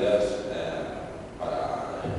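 Speech: a man talking into a microphone.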